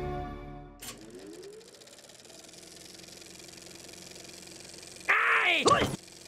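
Film soundtrack: the studio-logo music dies away in the first second, then a faint steady hum, and near the end a loud sound effect of sweeping, warbling pitches lasting just under a second, for the animated opening titles.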